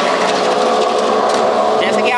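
Electric potato chip slicing machine running steadily with a constant motor hum while it cuts potatoes into chips.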